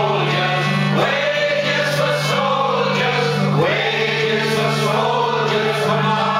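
Live folk song: male singing over sustained concertina chords and acoustic guitar.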